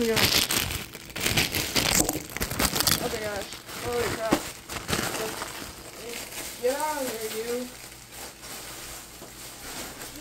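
Plastic mailer bag crinkling and rustling as it is handled and pulled open, busiest in the first three seconds and lighter after that.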